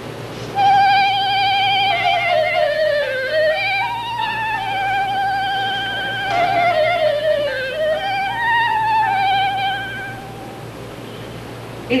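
Solo clarinet playing a short, slow melody with vibrato: the line falls and rises twice and stops about ten seconds in.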